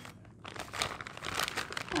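A plastic bag of frozen cherries crinkling in a few short bursts as it is handled and a few cherries are tipped out into a glass bowl.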